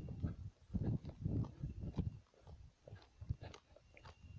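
Handling noise from a handheld camera carried along on foot: irregular low thumps and light clicks.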